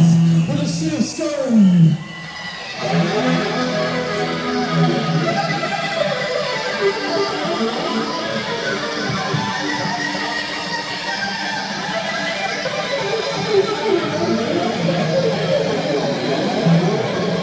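Live rock band: a voice briefly at the start, then after a short gap electric guitars start up and the band plays on.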